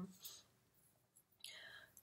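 Near silence: a pause with faint room tone, a soft hiss just after the start and a faint in-breath near the end.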